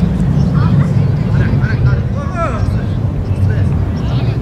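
Children's high-pitched shouts and calls during a youth football game, several short cries scattered through, over a steady low rumble.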